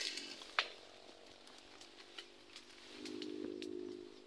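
Twigs and brush crackling, with one sharp snap about half a second in, as someone moves through dense undergrowth. A steady low hum starts about three seconds in.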